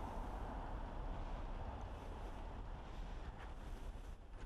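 Faint, steady low rumble of wind on the microphone over outdoor background noise, with no distinct events.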